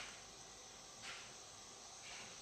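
Faint steady chorus of insects, crickets by the sound of it, with two brief scratchy noises, one at the start and one about a second in.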